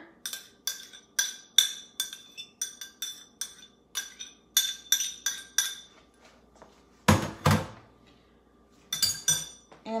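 Metal utensil clinking against a stainless steel mixing bowl in quick, irregular taps that ring, about two or three a second, as soaked chia seeds are scraped into the batter. There are two heavier thumps about seven seconds in, and a few more clinks near the end.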